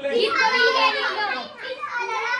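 Several young children talking and calling out at once, their high voices overlapping.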